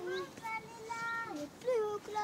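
A young child singing in long held notes, a few of them with short glides up and down between.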